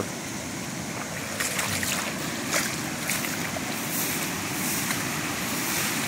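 Floodwater flowing over a road and through grass, a steady rushing of water with a strong current.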